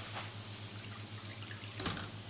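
Wire basket of chips lifted out of a commercial deep fryer, hot oil dripping and trickling back into the vat over a steady low hum, with a short metal clink near the end as the basket is hung up to drain.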